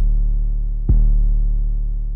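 An 808 bass playing on its own: long, slowly fading low notes, with a new note starting about a second in. It is saturated by iZotope Ozone 12's Exciter in Retro mode, which adds a stack of upper harmonics above the deep fundamental.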